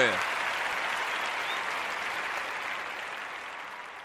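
Applause, fading out steadily.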